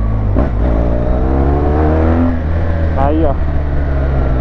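Large motorcycle's engine running under way with wind rush, its note rising as the bike accelerates from about 50 to 63 km/h. A brief word from the rider near the end.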